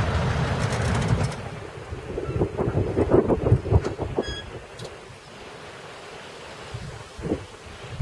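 Wind rumbling on the microphone for the first second or so. Then comes a string of short, soft knocks and rustles, with a brief high chirp about four seconds in. After that it is fairly quiet.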